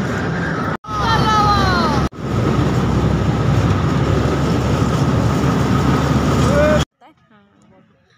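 Steady loud rumble of a small amusement-park train ride running along its rails, broken twice by brief dropouts, with a few short gliding squeals about a second in. It cuts off abruptly near the end, giving way to quiet speech.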